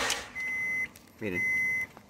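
Dashboard warning chime of a 2002 Acura MDX sounding as the ignition is switched on: two steady, high-pitched beeps, each about half a second long.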